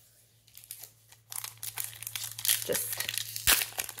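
A Pokémon TCG booster pack's foil wrapper crinkling and being torn open by hand, starting about a second in, with one sharp crack of the foil near the end.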